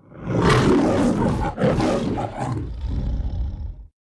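The MGM logo lion roaring: two roars, the second following a short break about a second and a half in, trailing into a low rumble that cuts off sharply just before the end.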